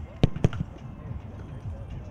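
Two sharp thumps of a kicker's foot striking a football, about a fifth of a second apart, with faint voices underneath.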